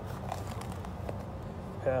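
Faint rustling and a few light clicks as hands handle a drysuit and a plastic drysuit connector, feeding the connector through the suit's valve hole.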